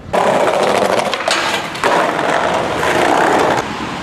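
Skateboard wheels rolling over a stone-paved surface: a loud, steady, rough rolling rumble that drops away sharply about three and a half seconds in.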